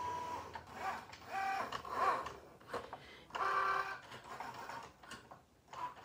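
Cricut Joy cutting machine cutting cardstock: its motors whine in short stretches of a second or less, with brief pauses between, as the blade carriage and rollers move the mat.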